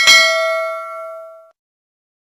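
Notification-bell 'ding' sound effect: one bell-like strike with several overtones that rings and fades, cut off about one and a half seconds in.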